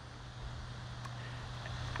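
Faint, steady low rumble of outdoor background noise in a short pause in speech.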